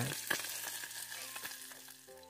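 Wood cooking fire crackling and hissing, with one sharper crack early on, fading out toward the end.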